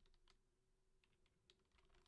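Near silence, with a few faint computer clicks from the producer working the DAW.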